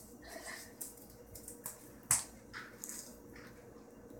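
Faint clicks and handling noises as cookies are picked up from the kitchen counter, with one sharper click about two seconds in.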